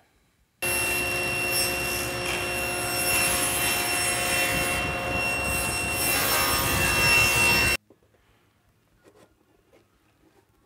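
Table saw ripping a thin plywood panel along the fence: a steady whine from the blade with the noise of the cut. It starts abruptly just after half a second in and cuts off abruptly about two seconds before the end.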